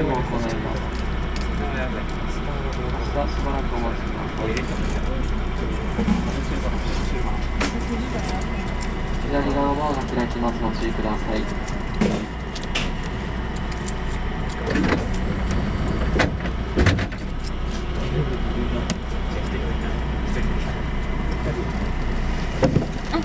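Steady low hum inside a standing JR West 221 series electric train, heard from behind the cab, with low voices and a few sharp knocks, the loudest about 15 to 17 seconds in.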